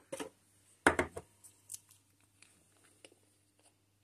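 A few small clicks and knocks of plastic model parts and hobby tools being handled on a workbench, the loudest about a second in, then fainter ticks, over a faint steady hum.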